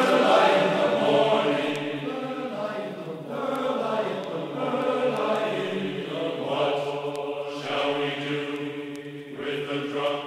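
Background music of a group of voices chanting in held, changing chords over a steady low note.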